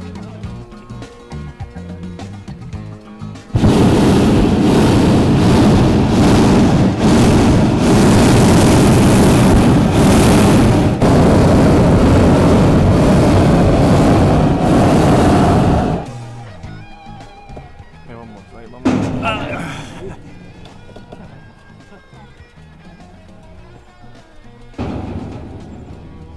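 Hot-air balloon propane burner firing in one long blast of about twelve seconds: a loud roar that starts abruptly a few seconds in and cuts off sharply, with background music underneath.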